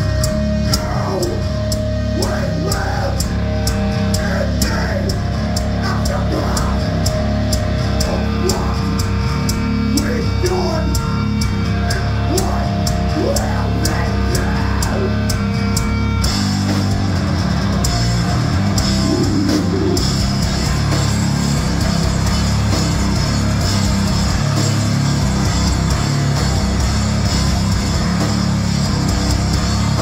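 Death metal band playing live: distorted electric guitar and bass riffing over fast, driving drums, with no vocals. About halfway through, the riff changes and the drums turn to a denser cymbal-heavy wash.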